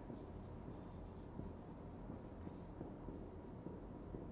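Felt-tip marker writing on a whiteboard: a run of faint short strokes as words are written out.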